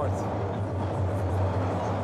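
TTC Line 1 subway train running through a tunnel, heard from inside the car: a steady low rumble with a hiss of wheel and track noise above it.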